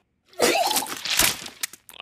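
Cartoon cat hacking and retching up a hairball: a harsh, noisy heave of about a second and a half with a strained vocal gag early in it.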